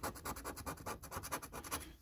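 A coin scraping the silver coating off a paper scratch card in quick, repeated strokes.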